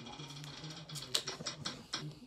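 A run of light, irregular clicks at a smartphone as its spin-the-wheel app is being worked, thickest in the second half, over a faint steady low hum.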